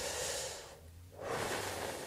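A man's slow, deliberate breathing while holding a kneeling low-back stretch: two long, soft breaths with a short pause between them about a second in.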